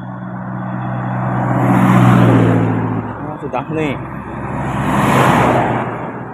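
Two motor vehicles passing close by, one after the other. The first brings a steady engine hum that swells and fades about two seconds in, and is the loudest part. The second is a rush of tyre and engine noise that peaks near the end.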